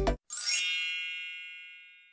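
Intro music cuts off, then a single bright bell-like ding sound effect rings out once and fades away over about a second and a half.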